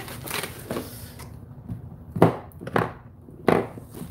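Products being taken out of a cardboard shipping box: a handful of short knocks and scrapes of cardboard and packaging. The loudest come about two seconds in and again near three and a half seconds.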